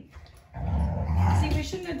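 A low, guttural growling voice that starts about half a second in after a brief lull and stops just before the end.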